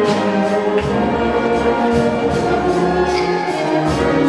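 Symphonic wind band of brass and woodwinds (trumpets, trombones, euphonium, clarinets, saxophones) playing sustained full chords in a live performance; deep low-brass notes come in under the chord about a second in.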